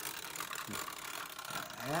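Clockwork mechanisms of celluloid wind-up Santa toys running, a fast, even ticking whirr of their gears.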